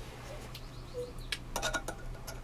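A quick cluster of small clicks about a second and a half in, from a hand tool being set against and gripping the end of a ball screw.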